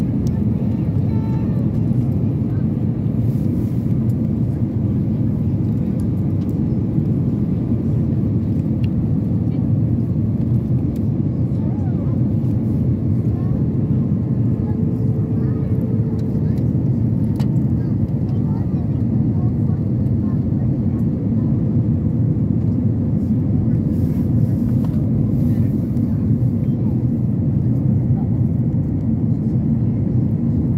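Steady, deep cabin noise of an airliner in flight, heard inside the cabin at a window seat over the wing: jet engine and airflow sound with an even rumble throughout.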